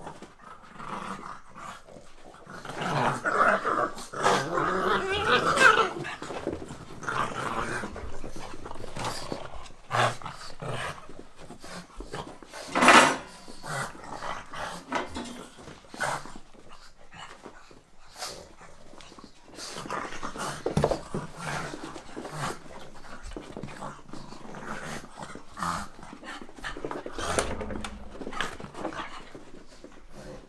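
Pugs play-fighting, growling at each other in irregular bursts, loudest for a few seconds near the start and in one short burst about 13 seconds in.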